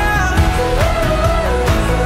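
Pop song recording: a sung melody line held over drums keeping a steady beat.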